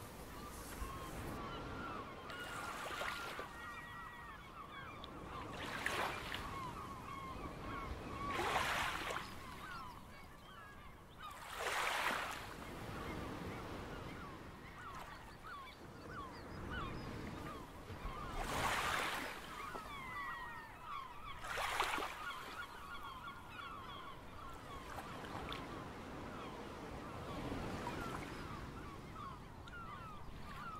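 A flock of waterbirds calling continuously, with a rushing wash of waves swelling up every few seconds.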